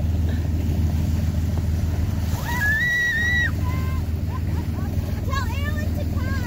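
Motorboat engine running steadily underway, a low drone with water rushing along the hull. About halfway through, a high, held squeal lasts about a second, and short high cries come near the end.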